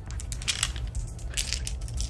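Plastic dice clicking against each other and against the tray as a hand gathers them up out of a dice tray, a few scattered clicks.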